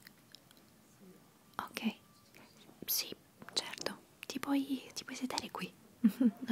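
A woman whispering softly, starting about a second and a half in, with some syllables becoming lightly voiced near the end.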